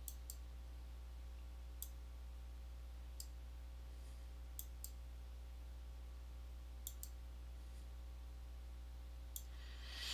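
Computer mouse button clicking about eight times at irregular intervals, some clicks in quick pairs, as wires are drawn. A steady low electrical hum runs underneath.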